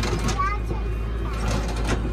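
Tractor engine running steadily, a low drone heard from inside the cab, with brief bits of voice over it.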